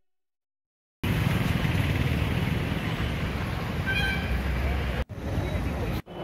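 Outdoor street noise, traffic rumble mixed with people's voices, starting suddenly about a second in and cut off briefly near the end. A short high tone sounds about four seconds in.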